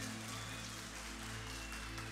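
Faint, steady electronic keyboard pad holding a low chord under a soft hiss of room noise.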